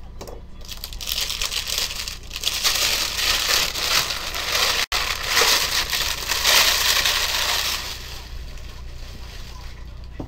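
Plastic shrink wrap crinkling and crumpling as it is handled and pulled off a sealed box of trading cards, loudest through the middle seconds.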